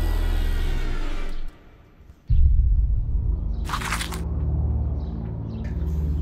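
Background score that cuts off about a second and a half in. After a brief silence a low, steady rumbling drone begins, with a short hiss near the middle.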